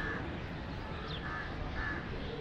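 Birds calling: three short, harsh caws like crows', over smaller birds' high, falling chirps and a steady low background rumble.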